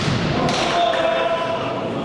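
Volleyball struck on a rally, a single sharp smack about half a second in.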